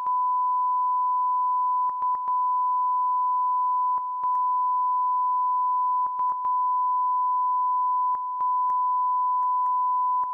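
Broadcast line-up test tone played over colour bars: one steady pure tone, broken by brief dropouts with small clicks, one or two at a time, about every two seconds.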